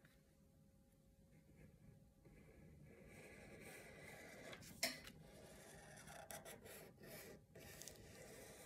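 Faint rubbing of a Sharpie marker's felt tip drawing lines across paper, starting about two seconds in after near silence, with a light tap a little before the five-second mark.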